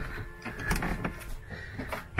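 Rustling handling noise with a few light knocks as someone moves through a small yacht cabin.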